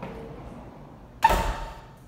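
A single sharp knock with a brief ringing tone a little over a second in, against faint room tone.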